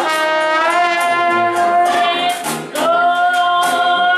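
Live traditional jazz band: a woman sings long held notes into a microphone over trumpet, trombone, saxophone and sousaphone, with a brief dip in volume just before a second long note.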